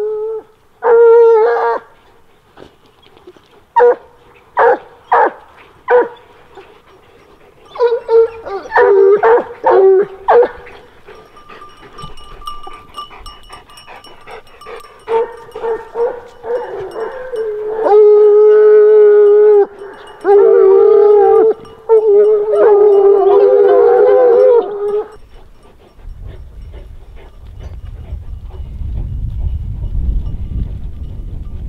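Grand Bleu de Gascogne hounds giving voice close by while hunting hare. First come a few short, separate barks, then from about eight seconds a quicker run of barks, then long drawn-out bays and howls. The voices stop a few seconds before the end, leaving a low rumble.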